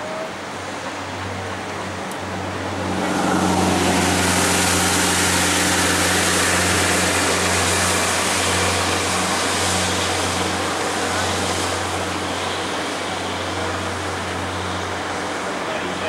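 Road traffic: a steady wash of engine and tyre noise that swells about three seconds in and holds, over a steady low engine hum.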